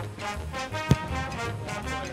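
Swing-style background music with brass and a steady beat. About a second in comes a single sharp thump: a football kicked off a tee.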